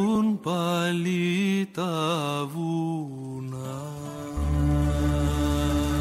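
The closing phrase of a recorded song: a voice sings a slow line with wavering, vibrato-laden notes over a quiet accompaniment. About four seconds in, a low held chord takes over.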